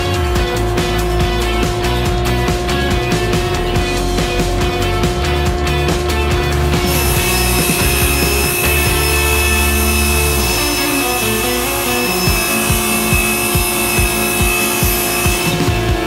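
Table saw ripping Baltic birch plywood into strips: the blade's high whine and cutting noise start about 7 seconds in and stop shortly before the end. Background music plays throughout.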